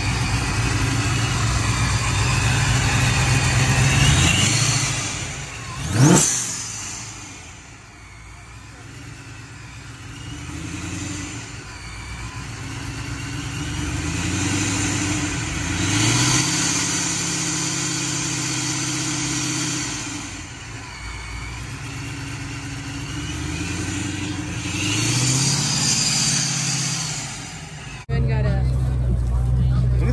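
Car engine idling and being revved several times, each rev climbing in pitch and falling back. A sharp rising rev about six seconds in is the loudest moment.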